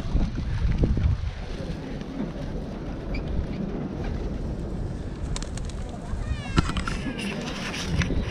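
A flock of feral pigeons close around, with a quick flurry of wingbeats a little past the middle and a few sharp clicks, over a steady low rumble of wind on the microphone.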